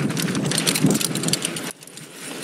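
2019 Giant Stance 2 mountain bike riding downhill on a loose, sandy dirt trail: tyres hiss over the sand and the bike rattles and clicks over bumps, with wind on the microphone. The noise drops away suddenly near the end.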